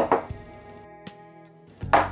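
Quiet background music, broken by a sharp knock at the start and another knock near the end.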